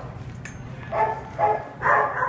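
Dog barking in a shelter kennel: three short barks, starting about a second in, a little under half a second apart.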